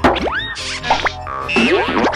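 Cartoon background music with springy boing sound effects: quick rising pitch glides, one about a quarter-second in and more in the second half.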